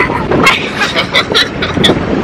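Wind rushing through the open windows of a moving car, with road noise, loud and steady.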